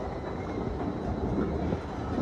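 Kone escalator running, a steady, even low rumble from the moving steps, mixed with the background hum of a large station hall.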